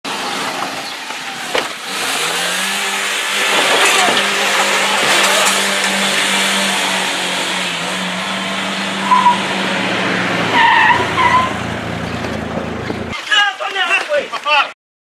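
Car engine revving up about two seconds in and then running hard, with heavy road and wind noise, as if recorded from a moving car; it cuts off abruptly about a second before the end, giving way to shouting.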